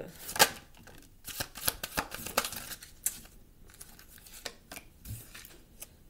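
Oracle cards being pulled from a deck and laid down one by one on a wooden table: a sharp card slap about half a second in, then several lighter taps and slides of card over the next couple of seconds, sparser toward the end.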